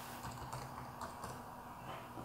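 Faint computer keyboard keystrokes, a few scattered key presses, as a word is deleted from a text field.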